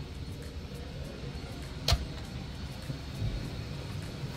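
A pull-out drawer on a boat's bar cabinet pushed shut, a single sharp click about two seconds in, over low steady room noise.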